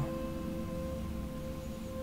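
Soft ambient meditation music: a steady drone of sustained, unchanging tones like a singing bowl's ring.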